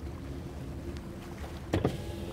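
Low steady rumble of an idling car engine, with one short, heavy thump near the end.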